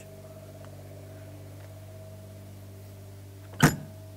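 A steady low hum of several pitched tones, then a single sharp bang near the end as a motorhome's metal storage compartment door is shut.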